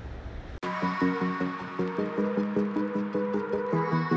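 Electronic background music with a steady beat and repeating synth notes, cutting in suddenly about half a second in after a brief low rumble.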